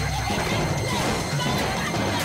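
Noisy commotion of a physical fight: scuffling, thuds and clatter in a dense din, over background music.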